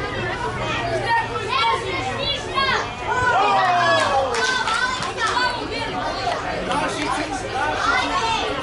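Several children's voices shouting and calling to each other across a football pitch during play, overlapping throughout.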